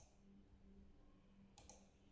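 Near silence with a faint low hum and a single faint computer mouse click late on.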